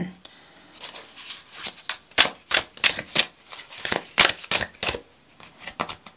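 A deck of oracle cards being shuffled by hand: a run of sharp, irregular card snaps, about three a second.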